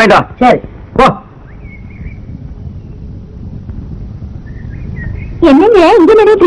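Film dialogue: speech in the first second and again near the end. Between them is a pause of about four seconds that holds only the soundtrack's low hum and two faint, brief high chirps.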